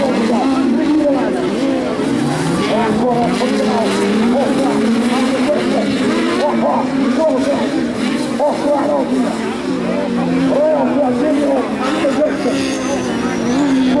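Several 1600cc autocross race cars running hard on a dirt track, their engines' pitch rising and falling as they accelerate and back off.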